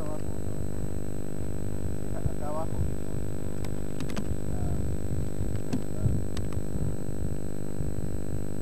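An engine running with a steady, even hum throughout, with a few faint clicks in the middle.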